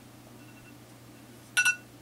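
A smartphone giving one short, high electronic beep about a second and a half in, over a faint steady hum.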